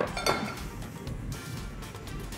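A spatula clinking against a glass mixing bowl, with a sharp click at the start, as diced apples are folded into cake batter, over background music.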